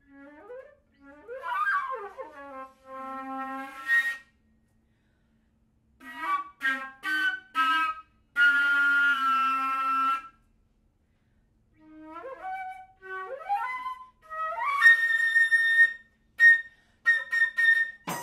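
Concert flute playing contemporary chamber music in three broken-up phrases separated by pauses of about two seconds. Each phrase has quick upward glides, held notes, and runs of short, sharp notes.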